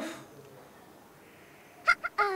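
A pitched vocal sound trails off, then there is quiet room tone, with a short sharp click just before the end.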